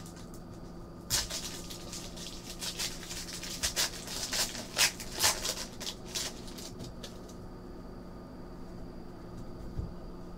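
Trading card pack wrapper being torn open and crinkled by hand: a run of sharp crackles for about six seconds, then it goes quieter.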